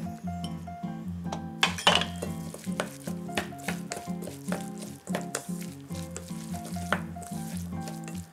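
Wooden chopsticks tossing moist shredded cabbage in a stainless steel bowl: a soft wet rustle with irregular clicks and taps of the chopsticks against the bowl. Background music plays throughout.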